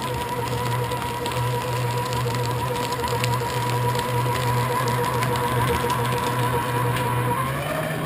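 Staples office paper shredder running under load as it cuts through a comic book: a steady motor hum with crackling of paper being cut. Near the end the hum rises slightly in pitch as the load eases.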